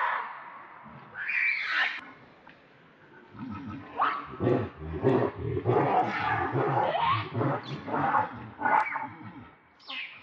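Baby macaque screaming as an adult pig-tailed macaque grabs and holds it down in shallow water: high-pitched cries at the start and about a second in, then a near-continuous run of wavering screams and squeals from about three and a half seconds until near the end.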